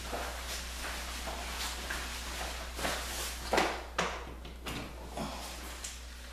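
Industrial ozone generator's fan running with a steady low hum and air hiss, its ozone cells switched off, under irregular knocks and rubbing from handling, loudest about three and a half seconds in.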